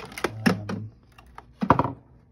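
Hard plastic clatter as a hand handles a black plastic electronic device sitting on a laptop lid: a quick run of clicks and knocks in the first second, then a louder knock near the end.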